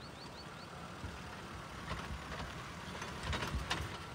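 Maruti Gypsy 4x4's engine running at low revs as it crawls over a muddy ledge, a faint, steady low rumble heard from a distance. A few low knocks near the end.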